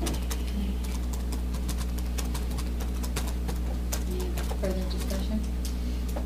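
Meeting-room tone: a steady low electrical hum, with light clicks and taps scattered irregularly through it.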